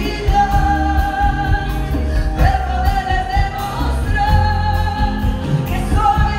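Live band with a woman singing lead into a microphone, holding long notes over drums and bass.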